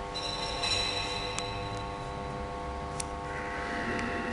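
A steady, unchanging hum of several sustained tones, with a light metallic clink just after the start that rings briefly and fades. Two sharp ticks follow, from metal altar vessels being handled on the altar.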